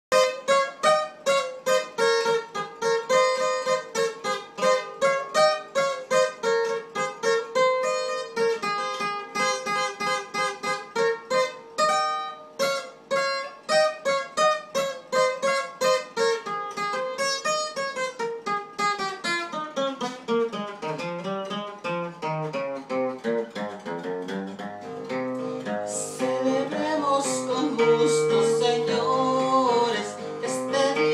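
Acoustic guitar played solo as an instrumental introduction: a quick plucked single-note melody, then a falling run down into lower notes, with strummed chords in the last few seconds.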